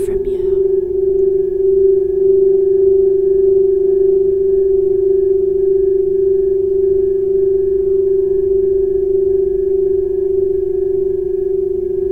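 Crystal singing bowls tuned to G and F# sounding one long, steady drone, with fainter higher tones held above it.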